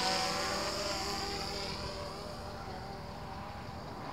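DJI Phantom 3 Professional quadcopter's motors and propellers buzzing, a steady whine of several tones that fades steadily as the drone flies off at speed.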